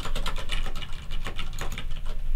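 Typing on a computer keyboard: a rapid, uneven run of key clicks.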